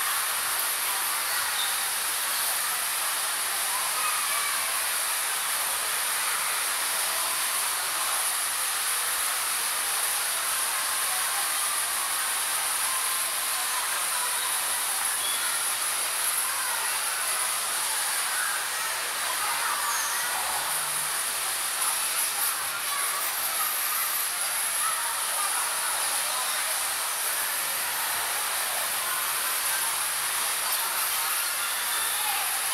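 Steady hissing din of an indoor bumper-car rink while the cars run, with faint voices mixed in.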